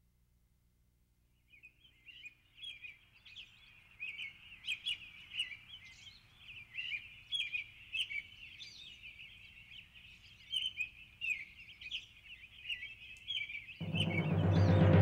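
Birds chirping: a dense chorus of many short, high chirps that starts after about a second and a half of silence and runs on steadily.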